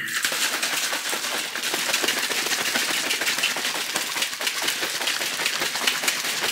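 Pink plastic shaker bottle being shaken hard, a fast continuous rattle, to mix creatine and beta-alanine powder into water.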